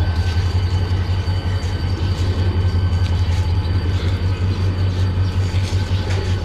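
Diesel locomotive engine running steadily: a deep, rapidly pulsing drone with a faint thin whine over it.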